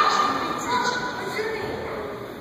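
High-pitched children's voices with background chatter in a large indoor hall.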